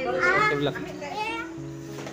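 A high-pitched voice sounds twice briefly, over background music with steady held notes.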